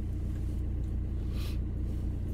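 Steady low rumble of a van's engine idling while stationary, heard from inside the cabin, with a brief soft hiss about one and a half seconds in.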